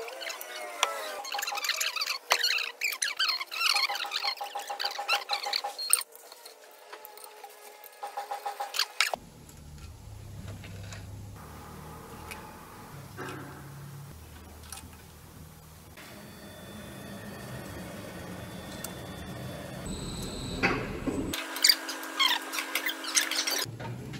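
A valve spring compressor on a MAN D2066 diesel cylinder head, squeaking and clicking metal on metal as the valve springs are pressed down and the keepers released. It comes in several short stretches broken by abrupt changes, with a low hum in the middle part.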